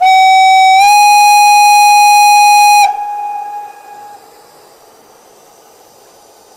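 Sound decoder and speaker of a 1:32 Gauge 1 brass model of a class 59 steam locomotive playing a long steam-whistle blast, a sample taken from another KM1 locomotive rather than a true class 59 whistle. One loud steady tone steps up slightly in pitch just under a second in, holds for nearly three seconds, then cuts off with a brief fading echo.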